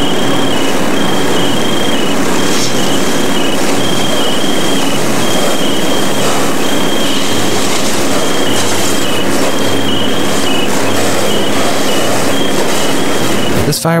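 Loud, steady rushing noise at a building fire, with water from fire hoses spraying onto the burning structure. A thin, high whine cuts in and out over it.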